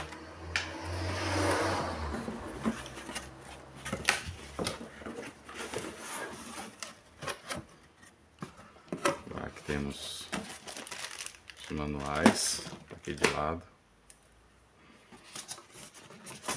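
Cardboard box and styrofoam packing being handled as the box is opened: a rustling scrape in the first couple of seconds, then scattered knocks, taps and rubs of cardboard and foam.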